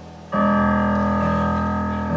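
Stage keyboard played with a piano sound: a soft held chord, then a loud chord struck about a third of a second in that rings on and slowly fades.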